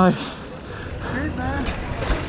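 Voices: a short spoken "nice" at the start, then other people talking more faintly, over a steady low rumble.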